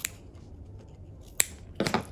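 Small scissors snipping through ribbon: a short snip right at the start and a sharp snip about one and a half seconds in, followed near the end by a brief, slightly louder rustling clack.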